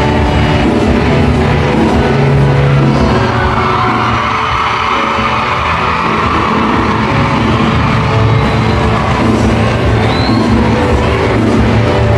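Live band music with singing, amplified through PA speakers in a large arena hall, with the crowd yelling and cheering in the middle.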